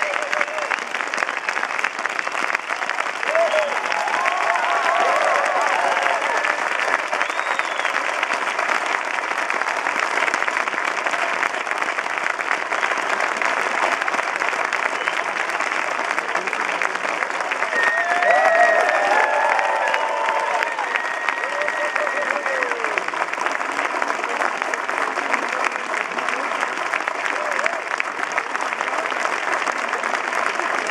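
Audience applauding steadily throughout, with a few voices calling out above the clapping early on and again about two-thirds of the way through.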